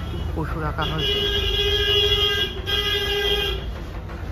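A vehicle horn sounds as one steady, held note for nearly three seconds, with a brief break partway through.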